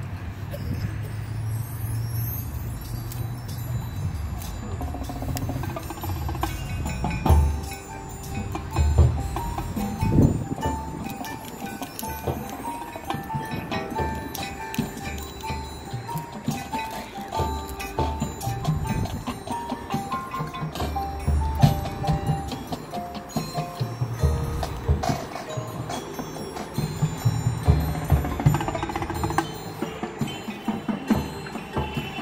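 High school marching band playing its field show: full brass chords with a low bass line, a moving melody above, and drum strikes that come loudest about seven to ten seconds in.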